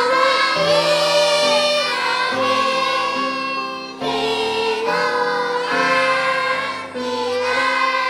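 A choir of young children singing a Korean worship song in unison over instrumental accompaniment, with long held notes and short breaks between phrases.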